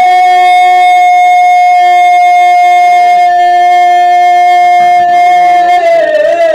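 A woman's solo voice, amplified through a microphone, holding one long, loud note. She slides down into it at the start and it turns to a wavering vibrato near the end.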